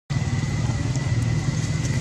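Steady low motor rumble with a faint, even high tone over it.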